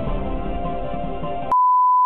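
TV station bumper music, cut off abruptly about one and a half seconds in by a loud, steady test tone: the line-up tone that accompanies colour bars at the end of a broadcast.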